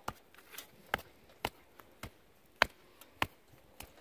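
Sledgehammer striking the top of a wooden stake to drive it into tilled soil: about eight sharp knocks at uneven intervals, roughly two a second.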